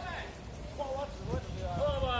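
People's voices talking or calling out in short phrases, over a steady low background rumble.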